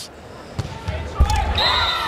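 A volleyball being served in a gym: one sharp, low thud of the hand striking the ball about a second in, followed by voices and a thin high tone near the end.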